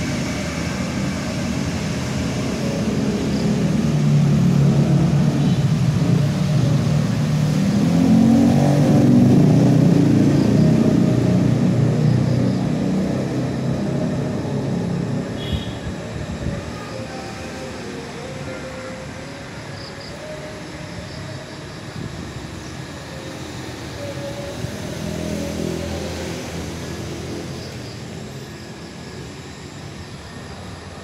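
Motor vehicles passing on the road: one engine swells to its loudest about nine seconds in and fades away, and a second, quieter one passes about twenty-five seconds in.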